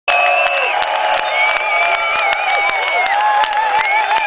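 Large concert crowd cheering and clapping, with high held calls sliding up and down over the noise.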